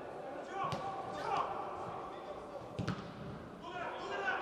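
A football being kicked twice on an indoor artificial pitch, two sharp thuds that echo in a large hall, over players' voices calling out.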